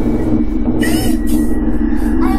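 Steady low drone from a horror video's soundtrack, held tones with a rumble beneath, and a brief wavering higher sound about a second in.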